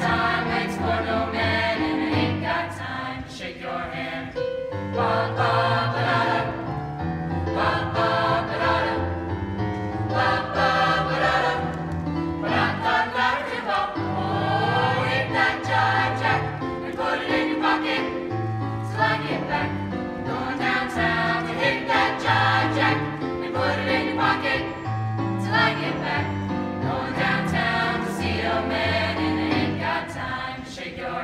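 Mixed choir of young women and men singing in parts, with a low part moving in short rhythmic notes beneath the upper voices.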